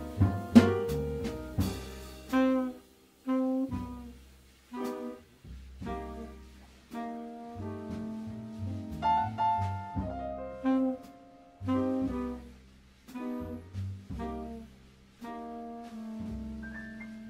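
Acoustic jazz quartet playing a slow, sparse passage: piano chords ringing and dying away one after another over upright bass notes, with soft drums and a few sharp cymbal or drum strokes near the start.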